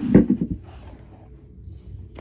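A short knock and scrape of objects being handled and moved close to the microphone, loudest in the first half second, followed by faint shuffling.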